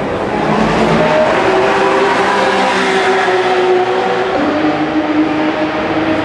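Porsche Carrera Cup race cars running on the circuit, their engines heard across the track as several steady engine notes over a general rumble. The main note drops to a lower pitch about four seconds in.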